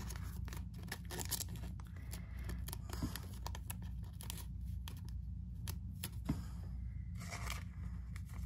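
Clear soft plastic card sleeve crinkling and rustling, with many small irregular crackles, as a trading card is worked into it by hand.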